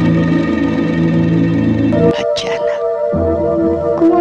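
Horror film trailer score: a sustained drone of held low chords that gives way about two seconds in to higher held tones, with brief breathy, hissing sounds over it.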